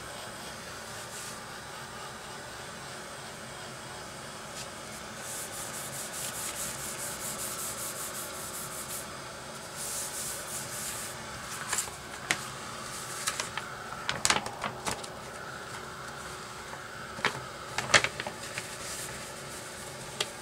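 Handheld heat gun blowing steadily over a dampened manila envelope to dry it. In the second half paper rustles and rubs sharply several times as the envelope is handled.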